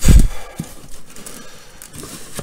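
A loud thump right at the start as the cardboard box is knocked, then quieter scraping and tearing as a knife blade cuts through the packing tape and rips up a cardboard flap.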